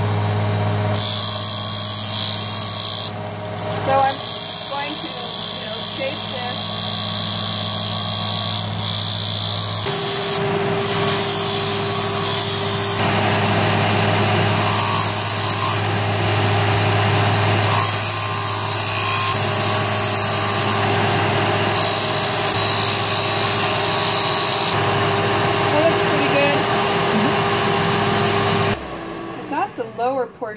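Benchtop belt-and-disc sander running with a steady motor hum while a tool-steel bar is ground on its sanding disc, throwing sparks; the grinding hiss comes and goes as the steel is pressed on and lifted off. The sander is switched off about a second before the end.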